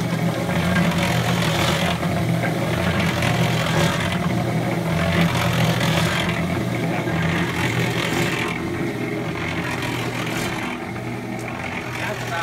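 Small electric cement mixer running: a steady motor and drive hum with wet concrete tumbling in the turning drum, the tumble swelling about every two seconds as the drum goes round.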